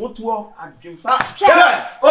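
Excited voices of several people talking over each other, with one sharp smack a little over a second in.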